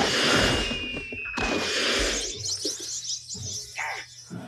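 Film soundtrack of orchestral music with a dense rush of action sound effects, loudest in the first two seconds, with a thin falling whistle lasting about a second near the start.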